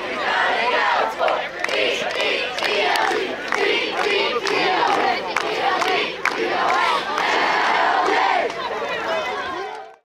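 A large crowd shouting and yelling at once, many voices overlapping into a steady loud din that fades out just before the end.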